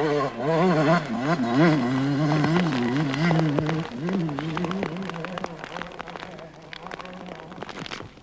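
Enduro motorcycle engine revving up and down as the rider works the throttle while passing, then fading steadily as the bike moves away, with a string of short ticks in its note.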